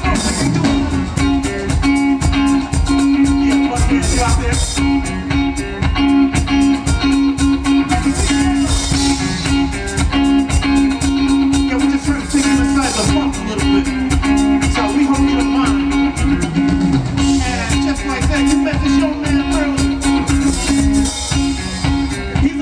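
Live funk band led by an electric rhythm guitar, with drums and a steady held low note running underneath.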